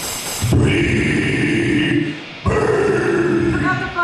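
Two long, loud guttural growled vocals into a microphone, each about a second and a half, with a short break between them: death-metal style growling with no guitar under it.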